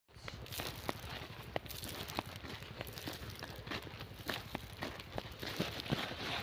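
Footsteps crunching over dry, cloddy field soil and crop stubble, a crisp step about every half second.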